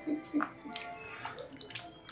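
Water splashing and sloshing in a plastic bowl as a hand is dipped and washed in it, in short irregular bursts, over soft background music.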